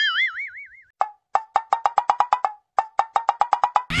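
Edited-in cartoon sound effects: a short warbling tone that wobbles up and down and fades, then two quick runs of popping blips, each run speeding up as it goes.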